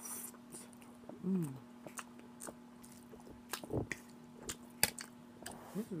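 Close-up mouth sounds of a person chewing ramen noodles: wet smacks and clicks scattered through, with a short hummed "mm" of approval about a second in. A steady low hum runs underneath.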